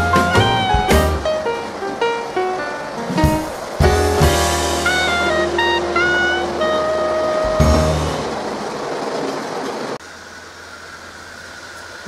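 Background music with a melody and steady bass line, which stops about ten seconds in, leaving a faint steady hum.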